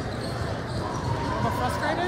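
Basketballs bouncing on an indoor court in a large, echoing hall, with players shouting in the second half.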